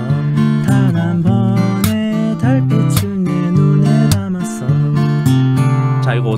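Steel-string acoustic guitar strummed in a rhythmic pattern through the chords BbM7, Cadd9, Dm and Dm7/C. Sharp percussive slaps on the strings cut in between the ringing chords, a demonstration of percussive strumming.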